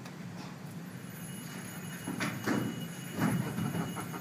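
Quiet hall room tone with a steady low hum, then a few soft knocks and rustles about two to three and a half seconds in.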